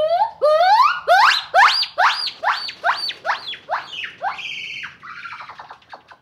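A gibbon calling: a series of about a dozen loud notes, each sweeping sharply upward in pitch, coming two to three a second and climbing higher as they go, ending in a few higher, flatter notes near the end.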